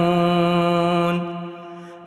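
A male reciter's chanting voice holds one long, steady note at the end of a phrase of an Arabic supplication (dua), then fades away in the second half.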